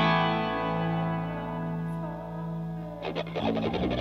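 Instrumental passage of a song: a guitar chord run through effects rings and slowly fades, then picked notes start up again about three seconds in.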